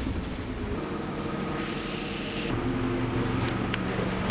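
Bus engine running with a steady low hum and road noise, its note shifting a couple of times.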